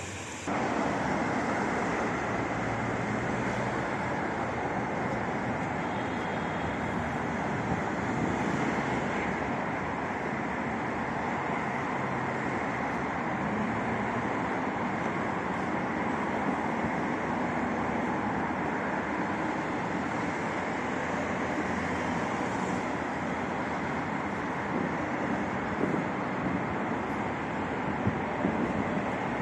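Steady outdoor street noise of road traffic and wind on the microphone.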